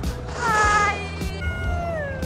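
Roller-coaster riders screaming and whooping: a short high-pitched scream about half a second in, then a long call sliding down in pitch near the end.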